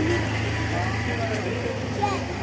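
Faint voices talking over a steady low hum.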